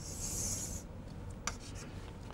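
Chalk writing on a chalkboard: one scraping stroke lasting under a second, then a single sharp tap about a second and a half in.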